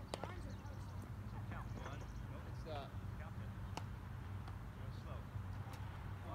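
Distant voices of children and adults calling across a baseball field. A few sharp knocks come through: one at the start, one near the middle and one near the end. A steady low rumble runs beneath.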